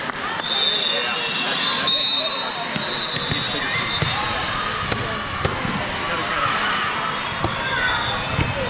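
Volleyball bouncing several times on a hardwood court floor over a babble of many voices echoing in a large hall.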